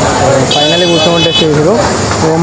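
A man's voice over busy street noise, with a shrill, steady high-pitched tone sounding for about a second from half a second in.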